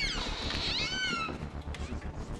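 A short high-pitched squeal, about a second in, that rises and then falls in pitch.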